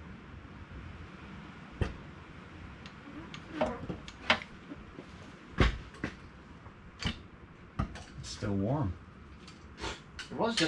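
Scattered sharp metal clinks and knocks, about six in all, from tools, parts and hanging hoist chain being handled during clutch work. A short hummed voice sound comes near the end.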